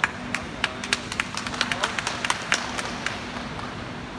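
Scattered applause from a few spectators: irregular single claps that begin suddenly and die away about three seconds in.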